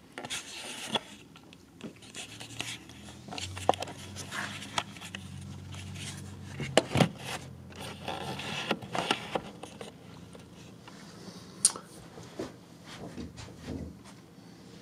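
Handling noise from a camera being held and moved about: rubbing and brushing against the microphone with scattered knocks and clicks, a few sharp ones, the loudest about seven seconds in, over a low hum through the middle.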